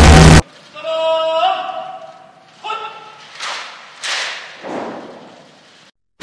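Loud music with heavy bass cuts off abruptly. A few short vocal sounds follow: a rising pitched cry, then several breathy bursts that each die away quickly.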